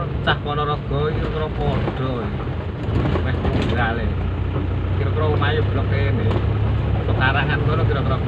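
Car engine running steadily, heard from inside the cabin while driving, under a voice talking on and off.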